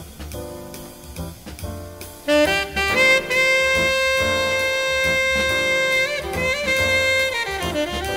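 Jazz saxophone solo over bass and drums: quieter phrases, then a couple of seconds in a loud note held for about three seconds, followed by shorter phrases.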